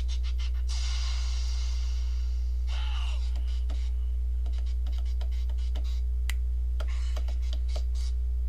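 Short snatches of music from a Nokia 5310 XpressMusic phone's small speaker as its songs are browsed, with scattered keypad clicks. The loudest sound throughout is a steady low electrical hum.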